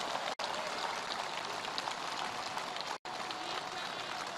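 Steady hiss of rain and a distant outdoor crowd, with no speech. The sound cuts out abruptly twice, about a third of a second in and at about three seconds, where the recording has been edited.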